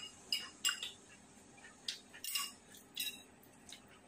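Chopsticks clinking against a porcelain rice bowl: about six light, short taps, some with a brief ring, spread through the few seconds.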